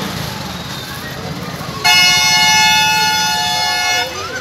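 A vehicle horn sounded in one loud, steady blast of about two seconds, starting about halfway through and stopping at the very end, over the low running of an engine.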